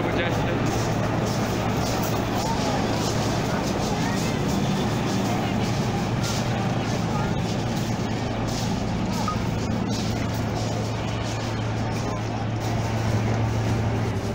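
Formation of military helicopters flying past overhead, a steady rotor and engine drone with a deep, unbroken hum.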